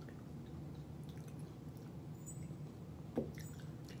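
Faint wet chewing and mouth sounds of someone eating the jelly-like pulp of a kiwano horned melon, over a low steady hum, with one short mouth sound about three seconds in.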